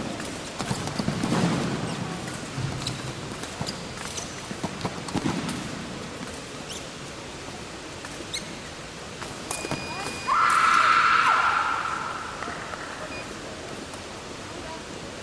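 Fencing-hall background of scattered voices and sharp clicks. About ten seconds in, a loud high tone lasts about two seconds.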